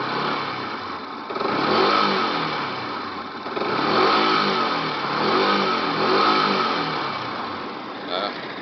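Yamaha YZF-R125's 125 cc single-cylinder four-stroke engine, warm, idling and revved in several throttle blips. Each blip rises in pitch and falls back toward idle, and the biggest comes about two seconds in.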